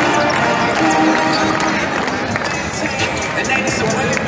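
Several basketballs bouncing on a hardwood court, with music playing throughout and voices in the arena.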